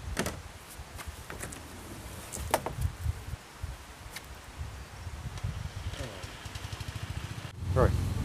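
Tailgate of a glassfibre-bodied Reliant Fox van being unlatched and lifted open: a few short sharp clicks from the catch and hinges, about two and a half seconds in, over a low rumbling noise.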